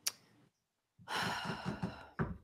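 A short click at the start, then about halfway in a person breathing out audibly in a long sigh just before speaking.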